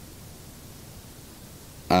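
A pause in speech: only a faint, steady background hiss.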